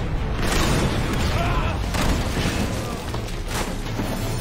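Film battle sound effects of explosions and crashing debris: a continuous heavy rumble broken by a few sharp impacts, about half a second in, around two seconds in and near the end.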